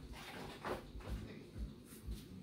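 Soft footsteps on a kitchen floor, low thuds about two a second, with a light knock or rustle about a third of the way in.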